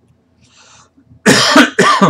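A man coughing twice in quick succession, about a second and a half in.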